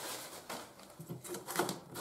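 Small plastic clicks and taps from a hand working the red screw cap of a small plastic bottle beside a PVC pipe elbow on bare floorboards. The clicks come in an uneven run through the second second.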